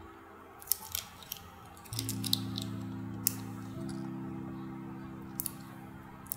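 A few sharp little clicks from the cap and packaging of an eyeliner pencil being handled and pulled open. Underneath, soft background music of held low chords gets louder about two seconds in.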